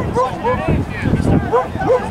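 A dog yapping, several short high barks in quick succession.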